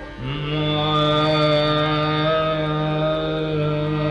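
Male dhrupad voice singing Raga Adana: just after the start it slides up into one long held note and sustains it steadily, over a quieter steady drone.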